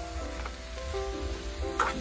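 Vegetables sizzling in a skillet as they are stirred, under background music with a melody of held notes.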